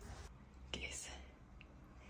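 A brief, faint whisper about three-quarters of a second in, over quiet room tone.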